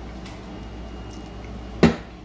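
A single sharp knock near the end, as something hits a hard countertop, over a low steady room hum.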